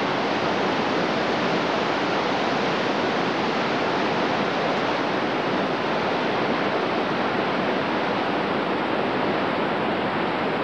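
Whitewater rapids rushing steadily: a continuous, even hiss of churning water.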